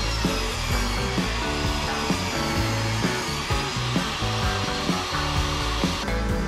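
DeWalt jobsite table saw running and cutting through the wood of a planter box as it is pushed along the fence, a steady high rushing whine, over background music.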